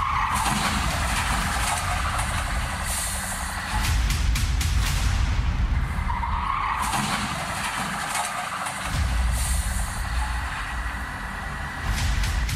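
Car driving fast, heard from inside the cabin: engine running hard under continuous road and wind noise, with a high squeal of the tyres twice, near the start and again about six seconds in.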